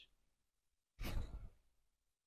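A person's single short breathy exhale, like a sigh, about a second in, after a moment of silence.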